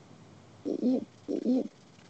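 A person's voice making two short, low hooting sounds about half a second apart.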